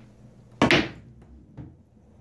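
Pool balls knocking on a billiard table during a shot: one loud, sharp clack about half a second in, then a fainter knock about a second later.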